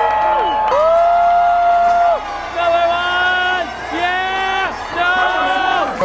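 People yelling long, held whoops on a vowel, about five in a row, each lasting about a second, with the pitch sliding up at the start and dropping away at the end.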